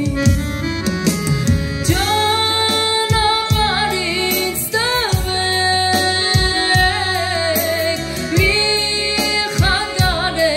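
A woman singing long held notes with vibrato, accompanied by a Korg Pa4X arranger keyboard playing chords over a steady drum beat.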